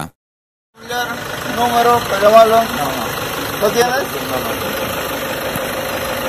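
After a short silence, an engine idles steadily while people's voices talk over it for the first few seconds.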